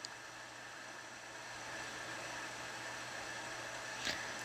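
Steady background hiss with a faint low hum, a little louder after about a second and a half: room tone with no clear source.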